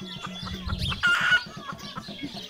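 A chicken clucking, with one louder call just after a second in.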